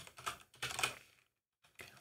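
Computer keyboard typing: a quick run of keystrokes in the first second, then a pause and one more light keystroke near the end.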